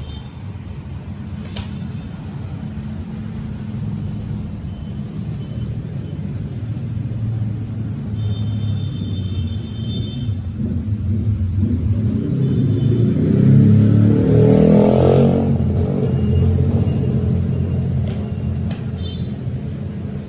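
A steady low engine rumble, like a motor vehicle, building to its loudest about two-thirds of the way through and then easing off as if passing by. A few faint high beeps and light clicks sound over it.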